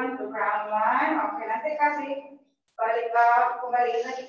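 Speech only: a voice talking, with a brief pause about two and a half seconds in; the words are not made out.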